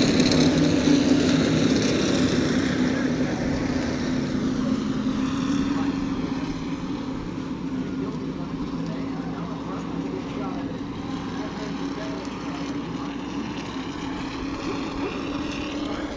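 Open-wheel modified race cars' engines running at pace-lap speed, a steady drone that fades gradually as the cars move off around the track.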